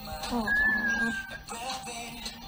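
A woman's high-pitched, drawn-out "Oh" squeal of emotion, held for about a second, over music playing in the background.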